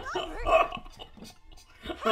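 A man laughing hard in a few loud bursts that die down after about a second.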